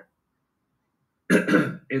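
About a second of dead silence, then a man clears his throat briefly before speaking again.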